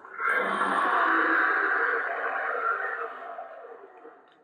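A long, echoing, breathy sound effect that comes in suddenly and fades away over about three seconds.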